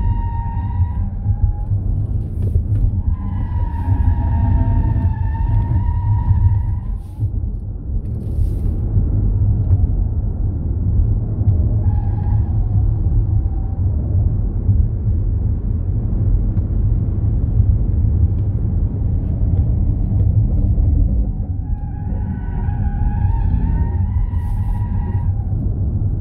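Ford Mustang Mach-E GT at racing speed: a steady, loud, low rumble of road and wind noise, with the tires squealing at the limit of grip through corners. The squeal comes near the start, from about three to seven seconds, briefly around twelve seconds, and again from about twenty-two to twenty-five seconds.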